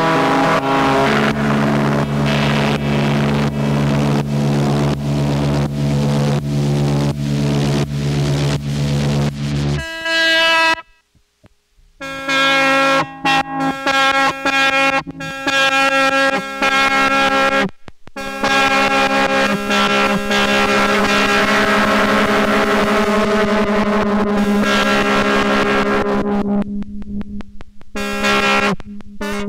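Lap steel guitar run through an amp into an ARP 2600 clone synthesizer: sustained drone notes with a rapid, even pulse. About ten seconds in the sound cuts off abruptly for about a second and a half, then the notes return, with another brief dropout near eighteen seconds.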